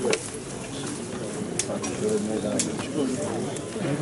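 Low murmur of a crowd of men's voices with a dove cooing, and two sharp clicks about a second apart in the middle.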